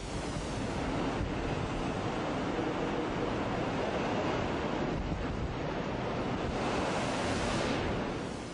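Steady rushing of ocean waves and wind, swelling slightly near the end.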